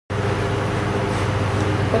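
Steady low hum of an elevator car in motion, with a few faint steady tones above the drone.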